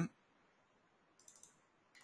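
Faint computer mouse clicks: a few quick ones a little past the middle and one more near the end.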